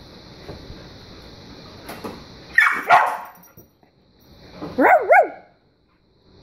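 Dog barking at shadows on a wall: two barks about two and a half seconds in, then two more quick barks about two seconds later.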